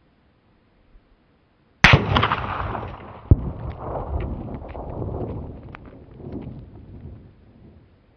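.204 Ruger rifle fired once: a sharp crack followed by a long rolling echo that fades away over about five seconds. A second sharp thump comes about a second and a half after the shot.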